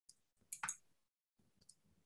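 A few faint computer mouse clicks over near silence, the loudest pair about half a second in and another near the end, while a slide presentation is being clicked through to find the right slide.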